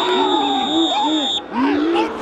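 A referee's whistle blowing one long steady blast that stops about a second and a half in, over loud shouting voices.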